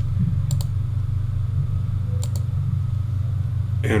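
A few sharp computer mouse clicks, a pair about half a second in and another a little past two seconds, over a steady low hum.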